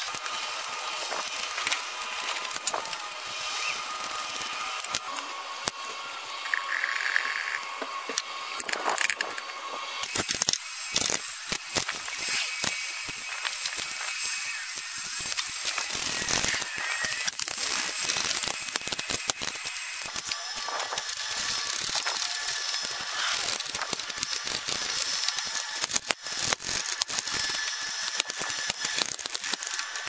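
Hand socket ratchet clicking in repeated runs of rapid clicks as bolts under the truck are run in and tightened, with metal clinks of tools and bolts in between.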